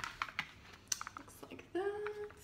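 A quick run of light clicks and taps as a four-pack of plastic yogurt cups is handled and moved. A woman's voice begins near the end with a held hesitation sound.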